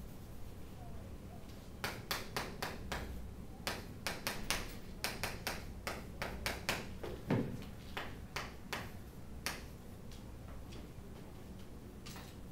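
Chalk tapping and scratching on a chalkboard as a chemical structure is written: a run of short, sharp clicks from about two seconds in until near ten seconds, with a brief low sound a little past the middle.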